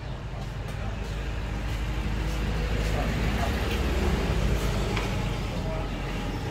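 Low engine rumble of road traffic, growing louder through the middle and easing off toward the end.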